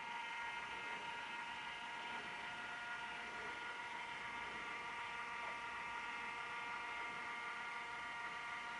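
Faint steady electrical hum with a thin high whine made of several held tones, unchanging throughout, with no other events.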